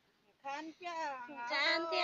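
A woman singing a Red Dao folk song in a high voice, starting about half a second in with gliding, wavering phrases and settling into a long held note near the end.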